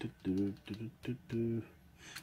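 A man's voice making three short hesitant murmurs, with a few sharp clicks among them.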